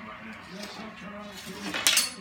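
A long wooden stick clattering against a wooden floor: a quick cluster of sharp knocks near the end.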